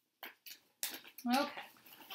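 A few short rustling and handling noises in the first second as a cross-stitch project and its packaging are moved about, followed by a woman saying "Okay."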